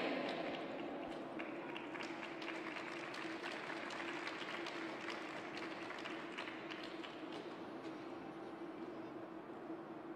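Thin applause from a small crowd in an ice arena, individual claps standing out, slowly fading, over a steady low hum.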